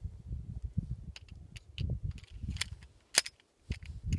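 A few light, sharp clicks and taps over low rumbling handling noise, the sharpest click about three seconds in.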